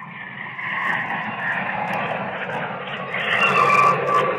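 A steady drone like aircraft engines, fading up over the first second and swelling louder near the end, with a few slowly wavering tones in it; it sounds like a played recording of warplanes accompanying a staged die-in.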